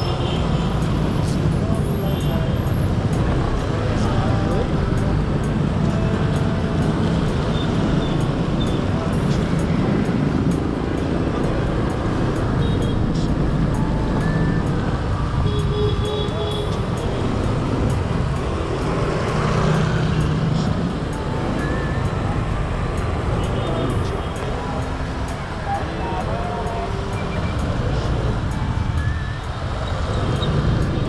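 Dense city traffic heard from a moving motorbike: a steady rumble of many motorbike engines and tyres on a wet road. Short horn toots, snatches of music and voices come from the street.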